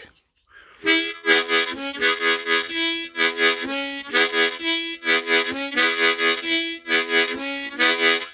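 Harmonica played in a chugging blues rhythm, starting about a second in: breathy chords pulsing about three times a second, with short held single notes between them.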